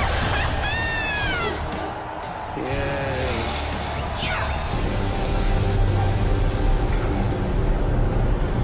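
Soundtrack of an animated series episode: background music with a few brief voices in the first half, one a high gliding exclamation near the start; from about five seconds in the music carries on alone with a steady low bass.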